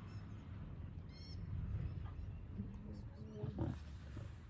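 Male lion giving low, rumbling grunts, calling to the pride.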